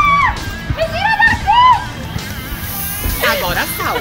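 A woman's loud, high held 'ah' breaks off with a falling slide just after the start. Excited high voices then whoop and laugh over background music.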